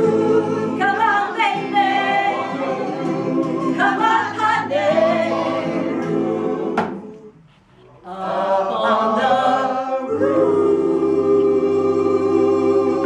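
A small mixed choir singing the closing refrain of a song. About seven seconds in there is a short break, and then the voices come back in on a long held final chord.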